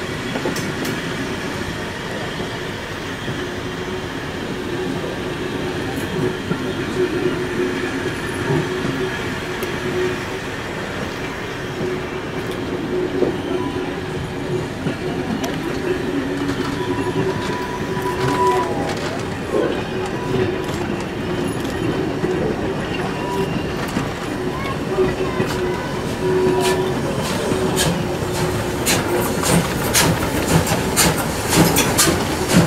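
Train of vintage passenger coaches rolling past, wheels clicking over the rail joints with a steady faint squeal on the curve. Near the end the clicks grow sharper and more frequent as the class 01 steam locomotive at the rear of the train comes by.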